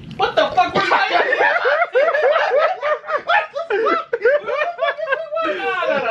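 A man laughing hard in quick, high-pitched bursts. The laughter breaks out suddenly at the start and keeps going, with a brief catch of breath near the end before it picks up again.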